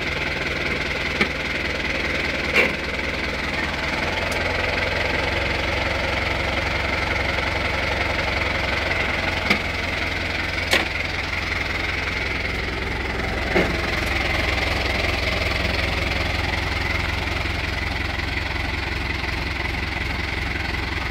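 Fiat 65-90 tractor's diesel engine idling steadily, with a few short sharp knocks scattered through.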